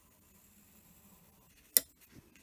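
Graphite pencil drawing a line on paper, faint, then a single sharp click near the end.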